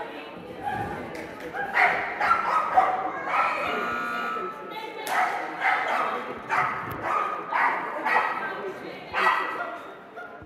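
A dog barking and yipping again and again in short sharp calls, about one to two a second.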